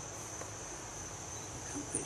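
Steady high-pitched chirring of insects such as crickets, a constant background drone, over a low rumble. A short louder sound comes just before the end.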